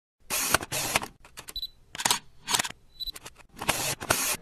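Camera shutter sound effects for a logo intro: a quick series of shutter clicks and mechanical whirrs, with two short high beeps in between.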